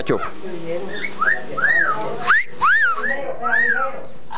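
Amazon parrot saying "Pacho" right at the start, then whistling a run of about six short notes, each rising and then falling in pitch.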